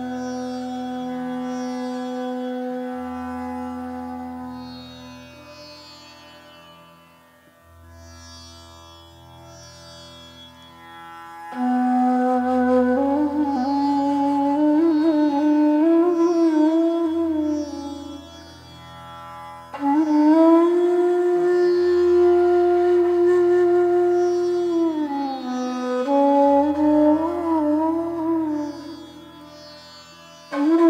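Bansuri (North Indian bamboo flute) playing a slow raag: a long low note that fades, a few soft notes, then from about twelve seconds in louder phrases that slide between notes, a long held higher note that glides down, and ornamented turns near the end. A low drone sounds underneath, repeating in a cycle of a few seconds.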